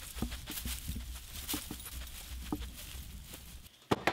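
A small dog nosing and pushing through dry grass: irregular rustling and crackling of dry stalks over a low steady rumble, cutting off just before the end.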